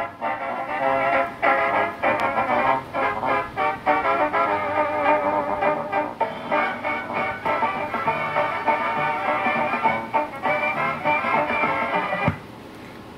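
Built-in background-music track from a CB radio's add-on sound box, a tune playing continuously with a thin sound that lacks deep bass and high treble.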